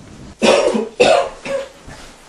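A man retching: two loud, harsh coughing heaves, the first about half a second in and the second about a second in, followed by a smaller third.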